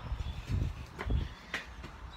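Wind rumbling in gusts on a phone's microphone outdoors, with two light knocks about half a second apart near the middle.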